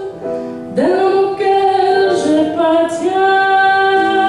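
A woman singing jazz into a handheld microphone with instrumental accompaniment. After a short pause she comes back in, about a second in, scooping up into a note, then holds long sustained notes.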